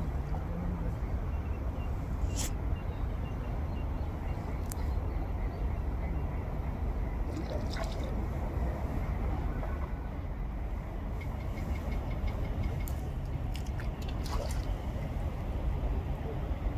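Steady low outdoor rumble with a few sharp clicks scattered through it and a brief faint voice.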